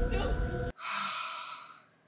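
A film soundtrack's deep low rumble with held tones cuts off abruptly less than a second in, followed by a woman's long breathy sigh that fades away.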